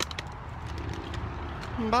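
A few short clicks right at the start, then a faint steady background. Near the end a man calls out a long, drawn-out "bye".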